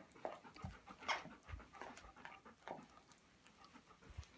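A dog panting faintly with open mouth, soft uneven breaths a few each second.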